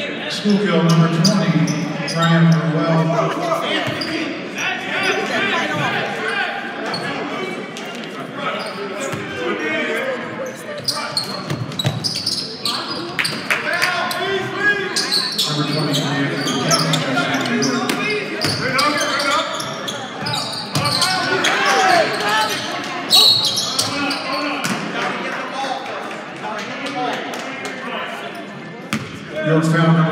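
Basketball bouncing on a hardwood gym floor among many short knocks, with players and spectators talking and calling out, echoing in a large hall.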